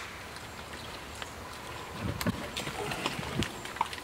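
Pigs feeding at a wooden grain feeder: from about two seconds in, low grunts come with scattered sharp clicks and knocks of eating.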